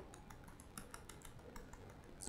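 Faint, quick run of laptop keyboard key clicks, about six or seven a second, as keys are pressed repeatedly to page back through slides.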